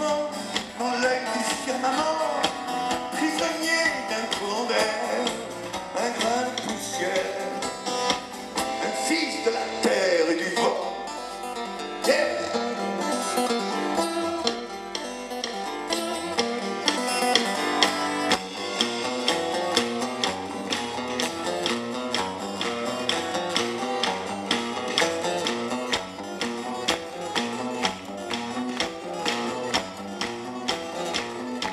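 A live rock band plays an instrumental passage led by guitar and keyboards, heard from the audience through the venue's PA. A steady beat comes in past the middle.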